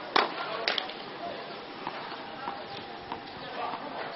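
Tennis ball being struck in a rally on a clay court: two loud sharp hits within the first second, then a few fainter knocks spaced about half a second to a second apart.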